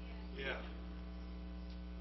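Steady electrical mains hum in the sound system during a pause. About half a second in, a faint voice says "yeah".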